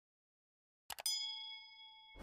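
Subscribe-animation sound effect: about a second in, a quick double mouse click, then a bell ding for the notification bell that rings on, slowly fading.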